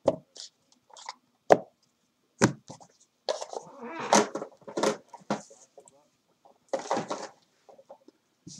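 A trading card box being opened and its cards handled: a few sharp clicks and taps, then stretches of cardboard and card rustling and sliding.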